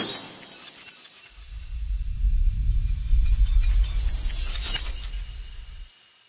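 Breaking-glass sound effect: the tail of a crash with tinkling shards, then a deep rumble that builds from about a second in, with more glassy crackle near the end before it cuts off suddenly.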